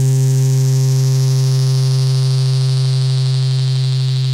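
Yamaha CS-50 analog synthesizer holding one low, buzzy sustained note, its bright upper overtones slowly fading as the filter closes.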